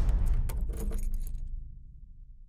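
Sound effect of metal jangling and rattling, with scattered sharp clicks over the ringing tail of a heavy clang. It dies away toward the end.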